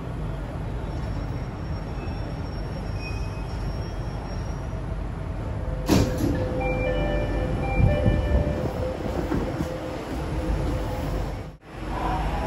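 Jakarta MRT train carriage rumbling low and steady as it comes to a stop at a station platform, with a sharp knock about six seconds in followed by a few short high tones, before the doors open.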